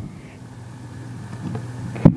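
A steady low hum under faint room noise, slowly growing a little louder.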